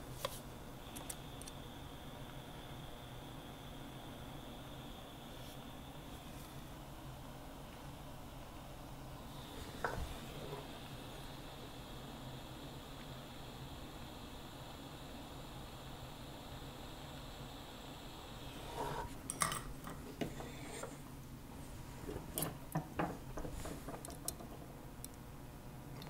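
Light metallic clinks and taps from steel tweezers and small jeweler's tools being handled at a soldering pan, a single knock about a third of the way in and clusters of clinks in the last third, over a faint steady background hiss.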